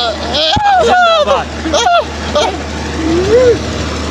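A young man who cannot speak making wordless, emotional vocal sounds, his voice sliding up and down in short cries, then one rising-and-falling call near the end; he is overcome and weeping. A steady low hum runs underneath.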